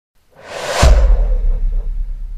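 Logo-reveal sound effect: a whoosh that swells over about half a second into a deep low hit, whose rumble then slowly fades away.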